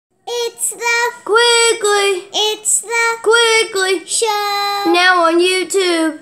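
A child singing a short tune unaccompanied, in a string of short notes with a longer held note partway through.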